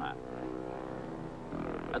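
Solo racing motorcycle engine running hard at high revs as the bike comes down the road, a steady engine note that shifts about one and a half seconds in.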